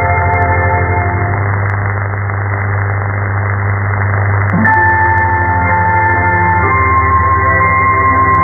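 Music with long held notes, heard through an AM shortwave receiver from Vatican Radio on 11870 kHz: narrow and muffled, over a steady low hum and hiss. The music fades into noise partway through, and fresh notes come back about halfway through.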